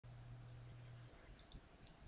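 Near silence: faint room tone with a low steady hum that stops about a second in, then a few faint clicks near the end.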